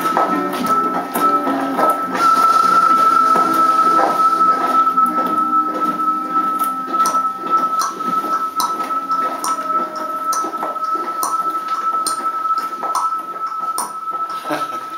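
Instrumental music: one high tone held steady throughout over lower notes that thin out about halfway, with scattered short clicks and taps.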